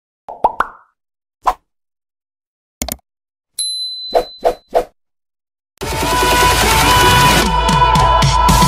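Animated end-screen sound effects: a series of short cartoon pops, some single and then three in quick succession, with a brief high steady tone under the last pops. About six seconds in, loud electronic music starts and runs on.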